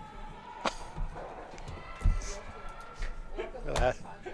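Granite curling stones knocking together in a takeout: a couple of sharp clacks on the ice, with brooms sweeping and a player shouting near the end.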